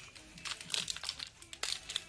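Foil Pokémon TCG booster pack wrapper crinkling in the hands as it is handled, a run of irregular crackles.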